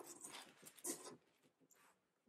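Near silence: room tone with two faint, brief soft noises about a second apart.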